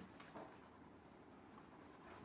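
Faint scratching of several pens on paper as a group draws.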